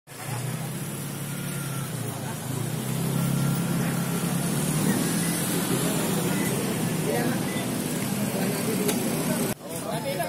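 A motor vehicle engine running steadily with a low hum, with people talking around it; the sound breaks off abruptly just before the end.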